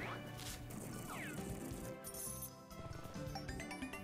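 Online slot game audio: background music with reel-spin sound effects, including two falling swoops in the first seconds. Near the end comes a rising run of stepped tones as the reels stop on a winning line.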